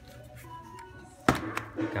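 Faint background music, then a single sharp plastic click about a second in as a USB cable is plugged into a Samsung phone charger, followed by a man's voice.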